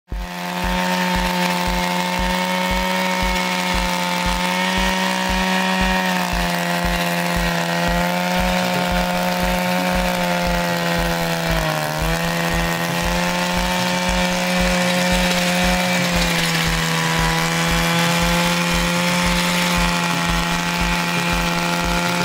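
Mini tiller's 42.7cc single-cylinder, air-cooled two-stroke engine running loud and steady at high speed while its tines churn dry soil. The engine pitch sags briefly about halfway through as the tines bite in, then recovers.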